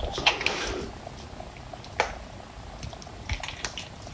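Soapy, lathered hands rubbing and squeezing together, making wet squishing sounds: a burst of squelching in the first second, then scattered small pops and squelches, a sharper one about two seconds in.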